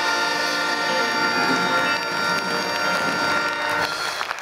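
Big band holding the final chord of the song: brass and saxophones sustaining one loud chord, cut off just before the end, where applause begins.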